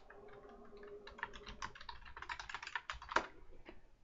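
Quiet typing on a computer keyboard: a quick, irregular run of key clicks, with one louder key press about three seconds in.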